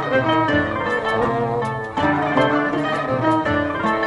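Instrumental Greek folk music from a small live ensemble: violin, accordion and a plucked table zither playing a tune of quick plucked notes over a low bass line.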